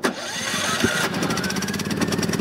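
Champion 3400-watt inverter generator starting cold: the engine suddenly catches and revs up, then settles about a second in into a steady, even run.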